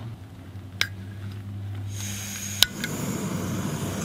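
Jetboil Flash canister stove being lit: a steady gas hiss starts about halfway in, a sharp click of the push-button igniter follows, and the burner keeps running with a steady hiss. A low engine hum from a passing truck fades out under it.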